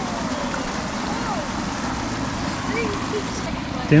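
Steady outdoor background noise, an even rushing hiss, with faint distant voices rising and falling over it.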